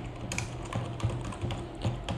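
Computer keyboard typing: a quiet, irregular run of key clicks as a word is typed out.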